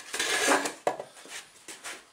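Handling noise from a clip-on microphone rubbing against a hoodie: a loud scratchy rustle in the first half-second, then a few separate clicks.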